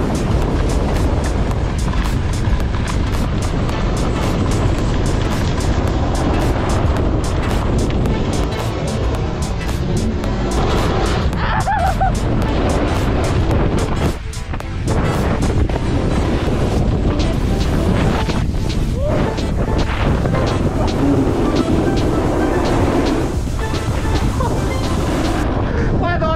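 Background music laid over the riding footage, loud and continuous, with a short dip about fourteen seconds in.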